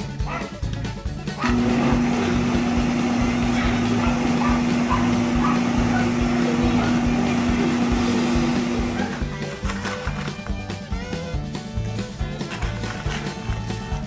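Countertop blender motor starting about a second and a half in and running steadily with a constant hum and whir while blending a fruit shake, then stopping a little after the middle, under background music with a steady beat.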